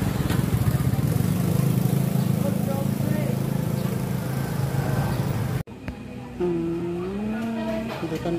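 A motor vehicle's engine running steadily close by, with a fast, even throb, cut off abruptly about two-thirds of the way in; after it a voice can be heard.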